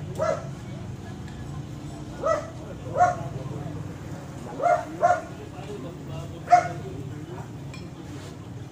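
A dog barking: six short barks at uneven intervals over a steady low hum.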